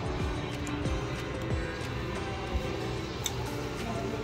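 Background music with steady held notes over a low bass line, and a brief click about three seconds in.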